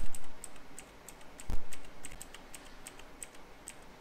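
Light clicks from a computer keyboard, about three to four a second, with two louder dull thumps at the start and about a second and a half in.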